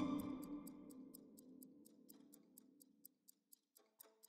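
Fast, light ticking like a clock, about five ticks a second, over a low music chord that fades away during the first two seconds or so.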